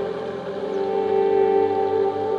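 Soft ambient background music with long held notes that swell slightly in the middle.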